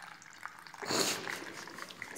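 Peach iced tea trickling from a can into a plastic cup, a faint pour. A short burst of breathy noise about a second in is the loudest sound.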